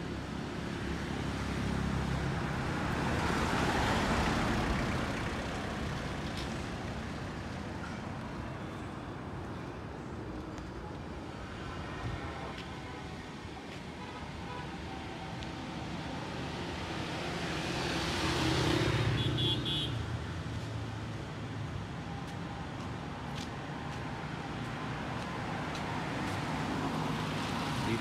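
Road traffic on the adjacent street: a steady low engine hum, with two vehicles passing close by, swelling and fading about four seconds in and again around eighteen seconds in.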